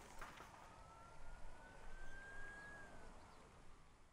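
Faint, fading background noise with one thin whistle-like tone that rises slowly for about two seconds and then dips, like a single distant siren wail, in the aftermath of a crash sound effect.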